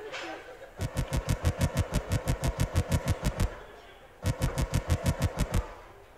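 Two runs of rapid, evenly spaced sharp knocks, about seven a second, with a short break between them, like a rapid-fire sound effect.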